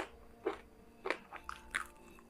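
Close-up eating of crispy fried chicken: a handful of sharp, crisp crunches from biting and chewing the breading, about one every half second.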